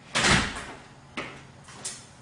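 An interior door slammed shut, one loud bang with a short echo, followed by two fainter knocks about a second later.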